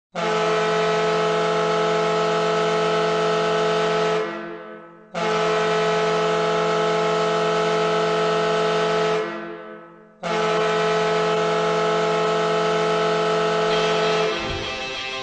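Air horn in the style of a hockey goal horn, sounding three long, steady blasts of about four seconds each with short gaps between them. The first two blasts fade out and the last one cuts off abruptly.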